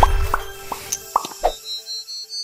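Cartoon-style sound effects of a TV programme's animated logo: about five short rising plops in quick succession over the tail of the theme music, followed near the end by a high tinkling note.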